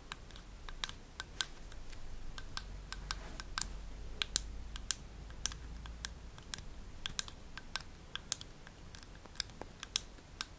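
Buttons on a pair of Sudio Regent headphones being pressed over and over: a run of sharp plastic clicks, irregular, about two or three a second.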